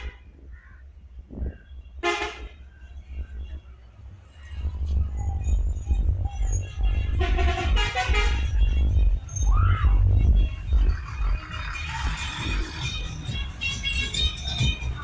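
Tourist bus horns sounding: a short blast about two seconds in and a longer blast of several tones at once a few seconds later, over the deep diesel engine rumble of a bus coming round the bend, which grows loud about halfway through.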